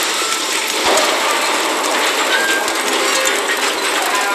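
Busy mechanical clattering made of many small rapid clicks, with one sharper knock about a second in.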